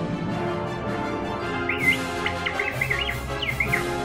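Droid Depot R-series astromech droid chirping a quick string of R2-D2-style beeps and whistles, starting a little under two seconds in and lasting about two seconds, over steady background music.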